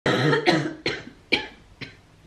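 A woman coughing into her elbow, a fit of about five coughs about half a second apart, the first longest and loudest, the last faint. She is sick with a cold that has turned into a sinus infection and the start of an upper respiratory infection.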